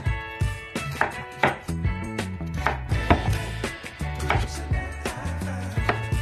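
Large kitchen knife slicing raw peeled pumpkin into strips, each cut ending in a sharp knock on a wooden cutting board, repeated about one to two times a second, over background music.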